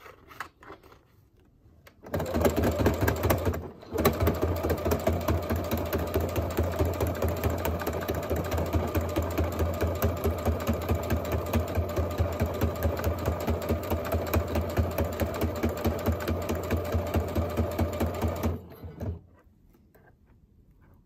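Computerized sewing machine running a straight stitch through fabric, a fast, even needle rhythm. It starts about two seconds in, dips briefly just before four seconds, runs on steadily and stops near the end, with one short burst after.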